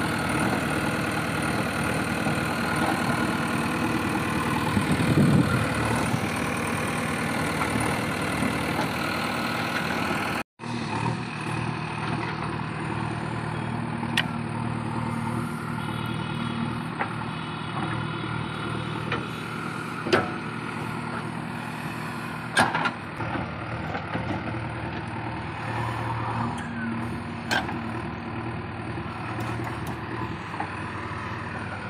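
JCB 3DX backhoe loader's diesel engine running steadily as the backhoe digs, with a few sharp metallic knocks from the arm and bucket in the second half. The sound cuts out for an instant about ten seconds in.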